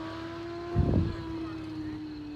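A vehicle engine running with a steady hum whose pitch slowly sinks, with a brief low thump about a second in.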